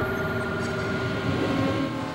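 A sustained low rumble with several steady tones held over it, like a drone chord in a commercial soundtrack.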